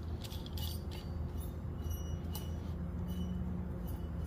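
Light, scattered metal clinks as a valve spring compressor is fitted and adjusted on a valve spring of a Toyota 18R cylinder head, over a steady low hum.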